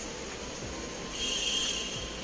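Metal spoon squeaking against the bowl as it stirs a thick milk-powder mixture. A steady high-pitched squeal starts about halfway through and lasts almost a second.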